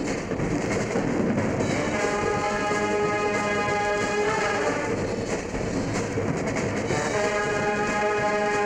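A large brass-heavy university concert band playing loud held brass chords. The chords break off and return a few seconds later, with denser, noisier ensemble playing in between.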